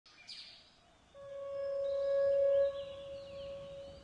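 A sustained ringing tone with overtones comes in about a second in, swells, then drops sharply and lingers more faintly. Faint bird-like chirps sound above it.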